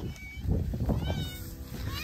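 Domestic cat meowing twice: a falling meow about a second in and a rising one near the end.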